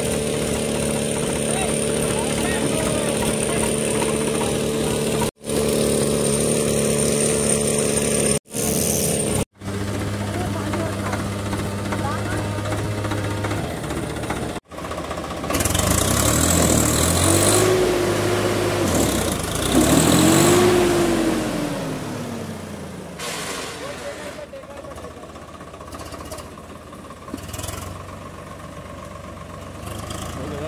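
Swaraj 855 tractor's three-cylinder diesel engine running steadily, then revved up and let fall twice about halfway through, with indistinct voices behind it.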